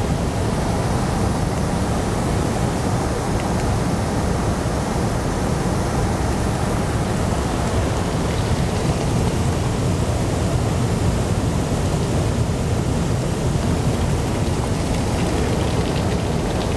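Steady rushing noise of a working maple sap evaporator at full boil: the fire under the pans and the sap boiling, even and unbroken throughout.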